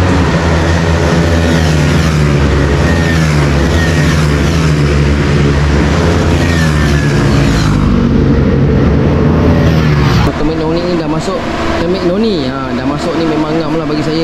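KTM RC 390 single-cylinder engines fitted with Termignoni slip-on exhausts, running loud and steady at high revs on a race track, the pitch dipping slightly about seven seconds in. The engine sound stops about ten seconds in and a man's voice takes over.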